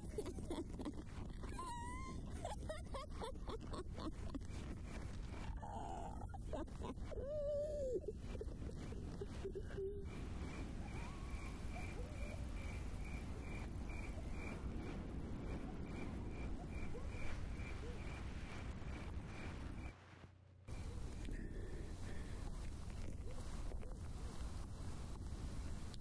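A woman's animal-like laughing and growling cries in the first half, over a steady low rumble. The rumble then runs on with a faint, evenly pulsing high tone, broken by a brief silence about four-fifths of the way through.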